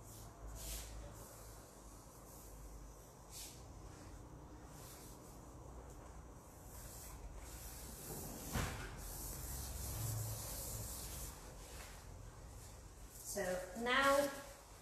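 Hands rubbing and smoothing a rolled-out sheet of sugar paste on a silicone mat: faint, soft brushing and rubbing, with a single sharper knock a little past halfway.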